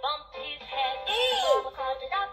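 Children's song with cartoon character voices played through a sound book's small built-in speaker; about a second in, a voice swoops up and then down in pitch.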